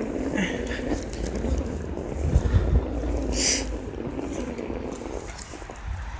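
Wind buffeting the phone's microphone in a snowfall: a steady low rumble with stronger gusts a little past two seconds in, easing off near the end. A short hiss cuts through about three and a half seconds in.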